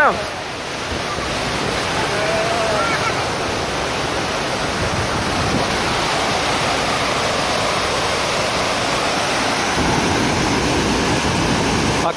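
Tall waterfall pouring into its plunge pool: a loud, steady rush of falling water.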